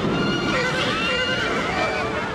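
Horses whinnying, several bending high calls over a dense, steady roar of noise.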